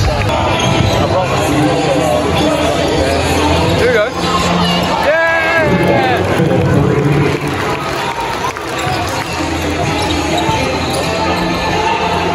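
Basketball game in play: a ball bouncing on the hardwood court amid people talking in a large hall, with music playing over the arena speakers.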